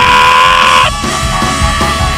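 Live praise-band music with guitar and a steady beat; over it a held, shouted vocal "yeah" on the microphone, which ends about a second in.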